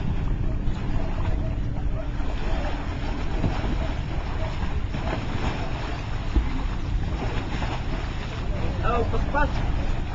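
Wind buffeting the microphone over sea water washing against a rocky shoreline, a steady rushing noise with a heavy low rumble.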